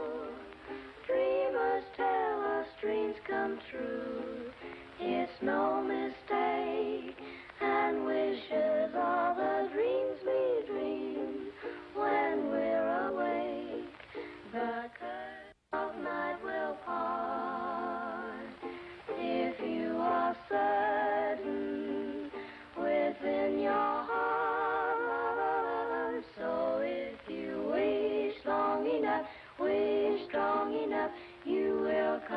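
A group of children singing a song together, on an old film soundtrack with no high end. The sound drops out for a moment about halfway through.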